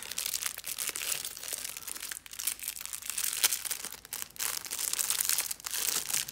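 Thin clear plastic packaging crinkling as a sleeve of paintbrushes is pulled open and handled by hand: a continuous rustle full of small crackles, with a couple of brief pauses.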